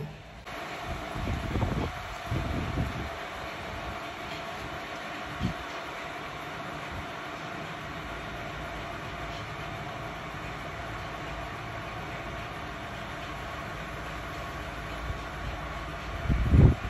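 Steady outdoor background rumble and hiss with a faint steady hum, a few low thumps in the first three seconds, and a small click near the middle.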